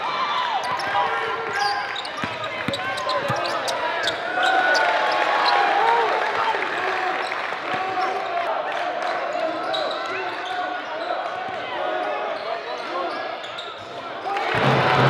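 Basketball game sound on a hardwood court: sneakers squeaking in short chirps, a basketball bouncing, and the voices of players and spectators throughout.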